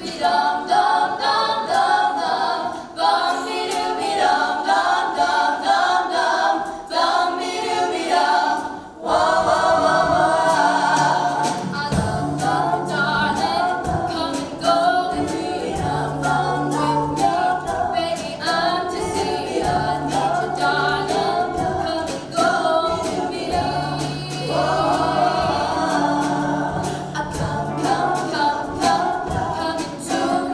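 Ensemble of young women singing a stage song together with a live band. The singing is at first lightly accompanied, then a bass line and drums come in about nine seconds in.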